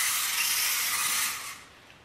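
Small VEX EDR robot's electric drive motors and wheels whirring as it swings back and forth to follow quickly changing heading commands, a steady high buzzing hiss that stops about one and a half seconds in.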